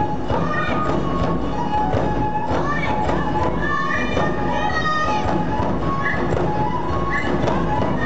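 Japanese festival hayashi music: high flutes playing a melody over steady drum beats, with voices mixed in.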